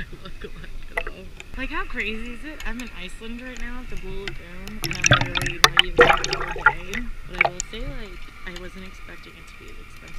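Lagoon water lapping and splashing against a camera held at the water's surface, with a burst of louder splashes and clicks about five to seven seconds in. Voices talk throughout.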